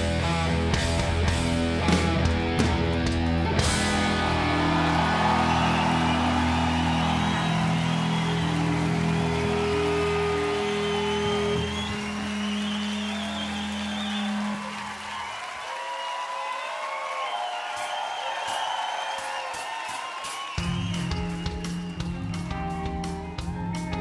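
Rock band ends a song with final drum hits about three seconds in, leaving a held guitar and bass chord that rings and slowly fades. A crowd cheers and whistles over it. Near the end a guitar starts playing again.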